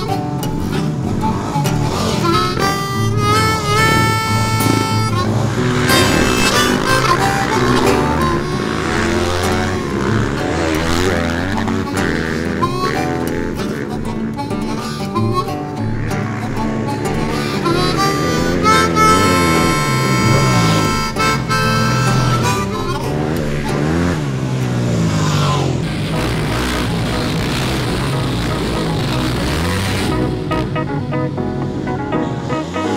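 Music with a harmonica, its held notes standing out twice.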